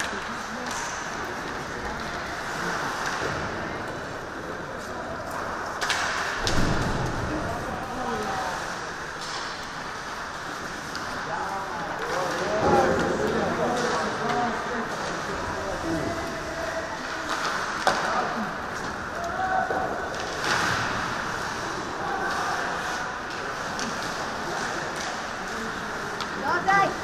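Ice hockey being played: skates scraping the ice and sticks and puck clacking, with a few sharp knocks. Voices shout on the rink now and then.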